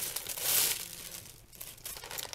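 Plastic mailer package crinkling and rustling as it is handled and opened, loudest about half a second in, then dying down.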